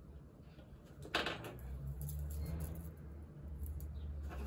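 A short rustle of paper about a second in, the loudest sound, followed by faint clicks and small handling noises of a pen at a desk, over a low steady hum.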